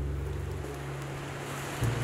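A low, steady bass drone of held musical notes, with a new low note coming in near the end, over a wash of waves and wind noise.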